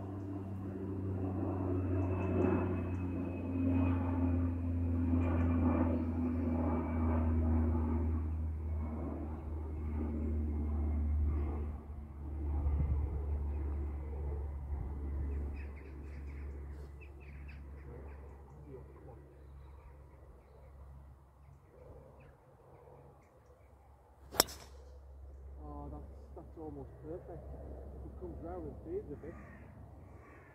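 A golf driver striking a ball off the tee: one sharp crack about three-quarters of the way in, the loudest sound. Before it a low steady engine drone fades away over the first half, and crows caw near the end.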